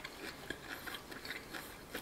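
Faint, irregular crackling of crunchy fried chicken crust being chewed with the mouth closed.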